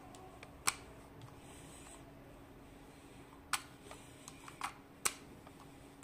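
A few sharp plastic clicks and faint handling noise as the detachable microphone's plug is twisted in its locking socket on the EKSA E900 Pro gaming headset's earcup.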